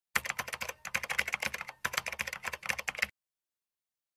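Rapid computer keyboard typing, a quick run of keystrokes with a brief pause about halfway, stopping abruptly about three seconds in.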